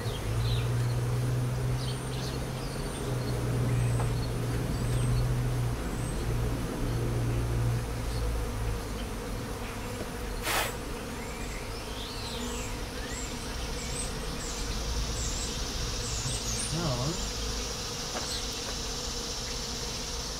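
Honey bees buzzing in and around an opened hive as frames are lifted out: a steady hum, loudest in the first half. There is a single sharp click about ten seconds in.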